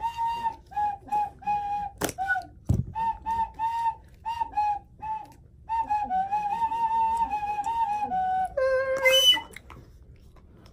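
Small blue plastic toy whistle blown in a string of short toots, then one long slightly wavering note from about six seconds in, dropping to a lower note near the end. A sharp click about two seconds in.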